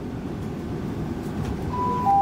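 Class 165 Networker Turbo diesel multiple unit running at speed, a steady low rumble of engine and wheels on rail heard inside the carriage. Near the end the first high note of the on-board announcement chime starts.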